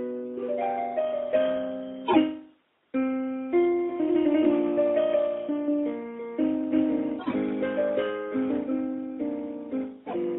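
Solo piano playing a classical-style original piece. There is a run of notes ending in a loud accent about two seconds in, then a break of about half a second with no sound, before the playing resumes with steady, fading notes.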